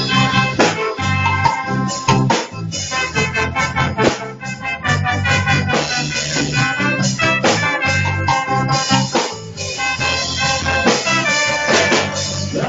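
Live reggae band playing, with a steady beat and a repeating bass line.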